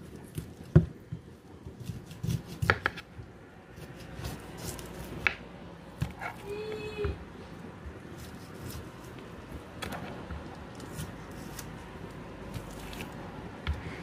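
Knife cutting smoked turkey on a chopping board: scattered taps and knocks of the blade against the board, the sharpest a little under a second in, with handling of the meat in between.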